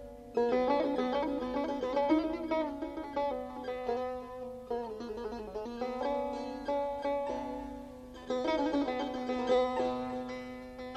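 A plucked Persian lute playing solo in dastgah Mahour: phrases of picked notes that ring and fade. New phrases start strongly just after the beginning, at about two seconds, near five seconds and just past eight seconds.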